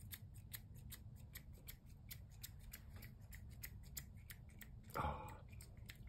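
Faint, rapid, regular ticking, about five ticks a second, over a low steady hum. A brief soft sound comes near the end.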